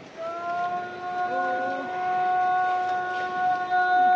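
A man singing kiyari, the traditional Edo work chant, holding one long steady note that begins just after the start and grows louder. Another voice sounds briefly about a second in.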